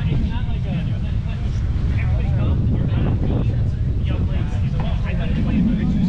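Steady low rumble of wind buffeting an outdoor camera microphone, with faint, distant voices of people talking across the field.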